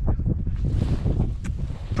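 Wind buffeting the microphone on open ice: a steady low rumble, with one faint tick about halfway through.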